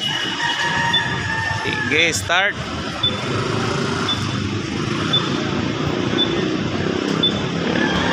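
Motorcycle engines idling with a steady low rumble. Over it, a brief warbling tone about two seconds in and a short high beep repeating about once a second from about three seconds on.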